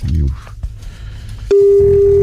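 A telephone line tone: a single steady, loud beep that starts suddenly near the end, heard on the line as a call is being placed.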